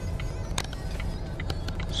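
Low steady rumble of a Volvo idling or creeping at parking speed, heard from inside the cabin, with a few faint clicks.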